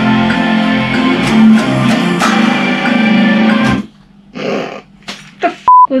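Ibanez electric guitar riff played loud and full, breaking off suddenly about four seconds in, followed by a few short scattered sounds and a brief steady high beep just before a voice.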